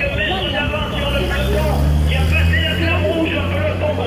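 Motor scooter engine running as it passes close by, a low steady hum that swells past the middle and fades near the end, over voices.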